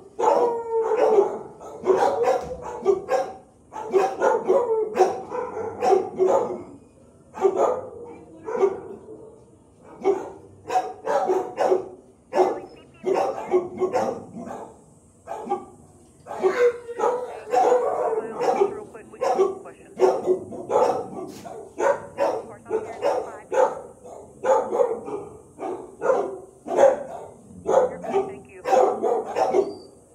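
Several kennel dogs barking almost without pause, the barks overlapping, in a hard-walled concrete-block kennel room.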